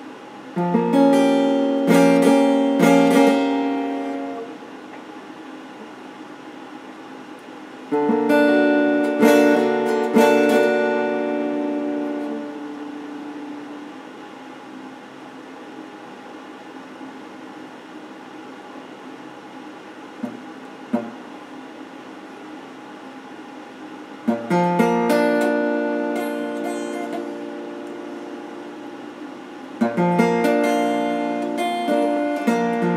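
Electric guitar with a clean tone, picked in three short phrases of chords that are each left to ring and die away, with pauses between them. Two faint clicks sound in the long middle pause.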